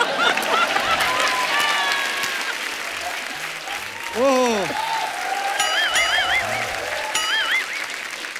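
Studio audience applauding and laughing, with a man laughing loudly over it early on. In the second half, a short warbling tone sounds twice over the clapping.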